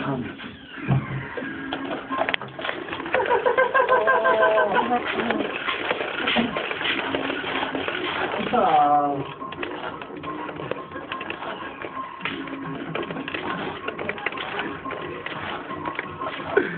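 Hushed voices and stifled laughter, with a falling run of laughter about nine seconds in, over music playing in the background.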